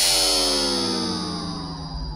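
Electronic synth sweep in the music track: a cluster of tones and a hiss gliding steadily down in pitch and slowly fading, the descending effect that leads into the beat.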